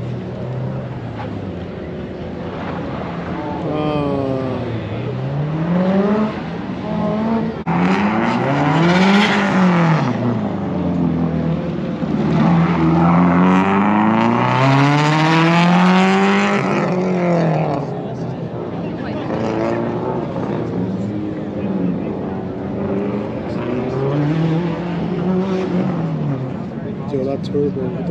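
Subaru WRX's turbocharged flat-four engine revving up and dropping back again and again as the car accelerates and brakes between the cones of an autocross course. It is loudest in the middle of the run, when the car is closest.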